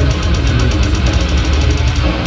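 Technical death metal band playing live at full volume: heavily distorted electric guitars over a dense low end, with drums and cymbals struck in a fast, even pulse.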